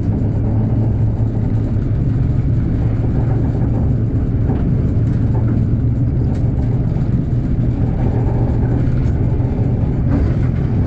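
Heritage locomotive running slowly along the line, a steady low rumble with a constant hum, heard from beside its cab.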